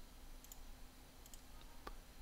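A few faint computer mouse clicks over near silence, the clearest one near the end.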